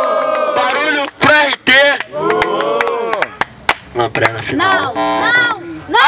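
Men shouting and whooping, one voice amplified through a microphone and small speaker, opening with one long held shout. Sharp clicks cut in between the calls.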